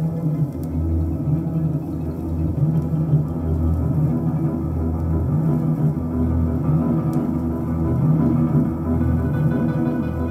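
Music played from a vinyl LP on a turntable: low plucked string notes repeating in a slow, steady pulse over a sustained backing.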